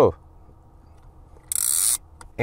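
Plastic clamp mechanism of a Beam air-vent phone mount making a short ratcheting zip, about half a second long near the end, as its spring-loaded arms are worked by hand.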